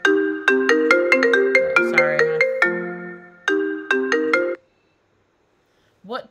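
Phone ringtone playing a quick marimba-like melody of struck, decaying notes, repeating its phrase, then cutting off suddenly about four and a half seconds in.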